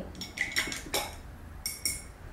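A paintbrush clinking against a glass rinse jar: about six light clinks, each with a brief high ring, a cluster in the first second and two more near the end.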